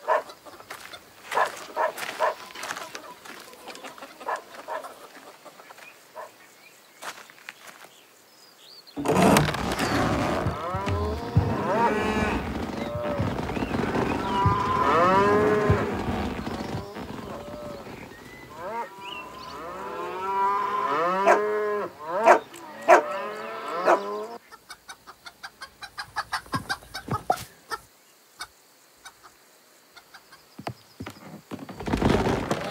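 Farm animal calls from cattle and chickens: short scattered clucks at first, then from about nine seconds in a loud jumble of mooing and clucking calls overlapping for about fifteen seconds, which cuts off suddenly and gives way to soft rapid clicking.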